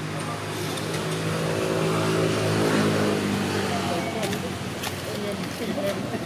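A motor vehicle's engine passing by, a steady hum that swells to its loudest two to three seconds in and then fades. Short calls that bend up and down in pitch follow near the end.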